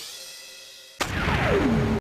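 Channel intro music sting with electronic sound effects: a fading synth tone, then about a second in a sudden loud drum-and-cymbal hit with a falling sweep, cut off abruptly.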